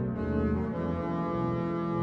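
Pipe organ of the Domkerk Utrecht, played from a Hauptwerk sample set on a home console: full sustained chords over a deep bass line, the harmony moving on within the two seconds.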